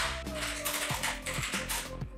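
Typing on a computer keyboard, a quick run of keystrokes, under steady background music.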